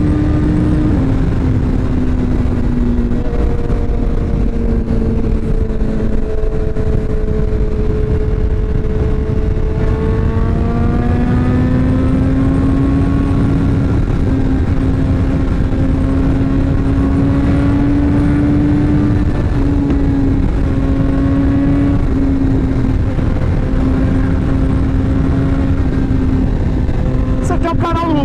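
BMW S1000R inline-four engine running at highway cruising speed under heavy wind and road rush. Its note eases slightly lower in the first few seconds and then climbs slowly from about ten seconds in, holding a steady higher pitch after that.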